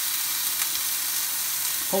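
Sea bass fillet sizzling skin side down in hot oil in a frying pan, a steady hiss.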